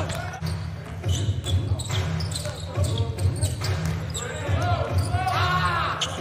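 A basketball dribbled on a hardwood court, a scatter of short knocks, over a low steady hum of the arena. Voices come in near the end.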